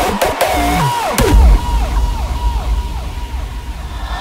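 Hardstyle track in a break: heavy kick drum hits stop about a second and a half in, leaving a repeated falling synth tone that fades away over a low drone.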